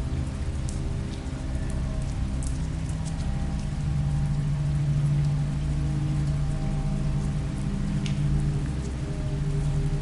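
Rain sound effect laid over a low, sustained dark drone that swells slightly in the middle, with faint scattered crackles.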